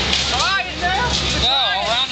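A steady low engine rumble, with people's voices calling or talking over it several times.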